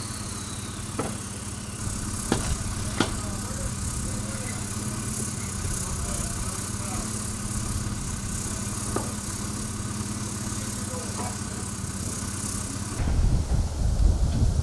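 A steady low engine hum, with faint voices and a few sharp knocks. About a second before the end it gives way to louder, irregular knocking and banging.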